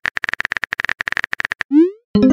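Rapid, evenly spaced typing-click sound effect, about fifteen clicks a second, as a chat message is typed, followed near the end by a short rising chirp as the message is sent.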